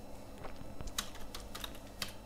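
Computer keyboard being typed on: a run of light, irregular key clicks, the sharpest about a second in.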